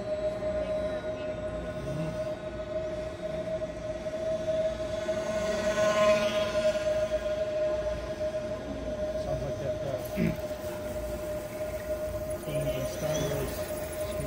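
Twin 10 mm brushless motors and propellers of a small foam RC Mosquito warbird whining steadily in flight. The whine is loudest as the plane passes close about six seconds in.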